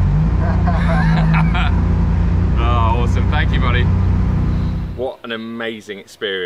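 Red Bull BMW M4 drift car's engine running steadily at low revs close by, with a brief dip and rise in pitch around the start, and people's voices over it. The engine sound stops abruptly about five seconds in and a man starts talking.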